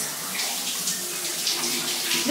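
Water running steadily from a bathroom tap or shower, a continuous hiss.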